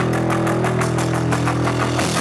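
Post-punk band playing live: a held, distorted low note from bass and electric guitar drones steadily at one pitch under fast, even drumming.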